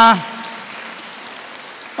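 Faint applause from a seated audience, an even patter, after a short 'ah' from the speaker at the start.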